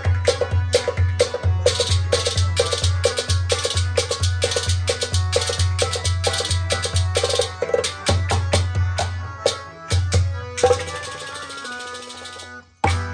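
Kashmiri folk instrumental: a clay-pot drum (nout) played with the hands in a fast rhythm, a steady beat of deep bass strokes about twice a second with lighter strokes between, over a harmonium's held notes. The playing thins out about ten seconds in and fades near the end.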